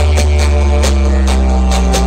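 Loud dance music played through a stack of big loudspeakers, with a heavy, steady bass drone under it and a sharp percussion hit about twice a second.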